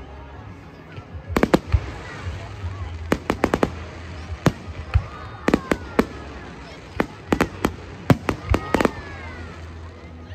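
Fireworks going off overhead: runs of sharp bangs and crackles as aerial bursts explode, coming in several clusters a second or two apart.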